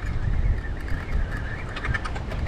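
Low rumbling noise of wind and ocean surf at the foot of a sea cliff, with a few faint clicks near the end.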